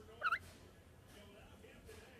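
A green-naped lorikeet gives one short call about a quarter of a second in, over faint background sound.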